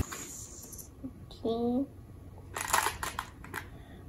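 Glass marbles clicking as they are picked out of a bowl and set down in rows on a plastic table, a quick cluster of light clicks in the second half. A child makes a short vocal sound about a second and a half in.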